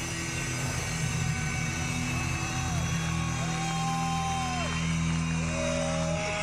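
Live rock band on stage, heard from within the crowd: long, held electric guitar notes that slide into and out of pitch over a steady low drone.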